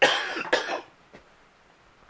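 A man coughing twice in quick succession at the very start, then only quiet room tone.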